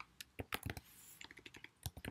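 Computer keyboard typing: a handful of quiet, unevenly spaced keystrokes, with a short lull about a second in.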